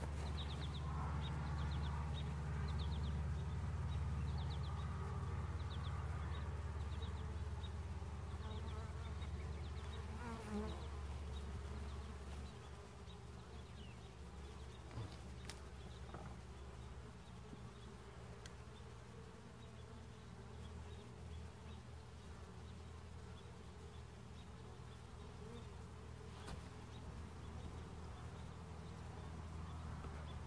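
Honeybees buzzing in a steady hum around an opened hive, louder for the first dozen seconds and then easing off, with a few faint knocks.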